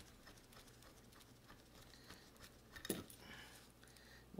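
Near silence with faint clicks from the parts of a mower blade balancer being handled and unfastened, and one sharper click about three seconds in.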